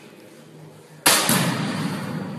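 Faint room noise, then about a second in a sudden loud bang whose noise fades away slowly.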